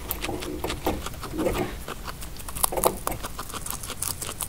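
Guinea pig chewing dry timothy hay: a fast, irregular run of small crunches.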